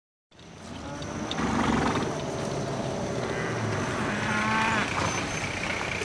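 Farm ambience fading in after a brief silence: cattle mooing, with bending calls around the middle, over a four-wheel-drive utility truck's engine running.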